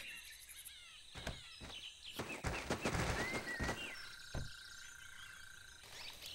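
Quiet rainforest ambience of birds chirping and insects, with a few soft scratchy strokes in the middle.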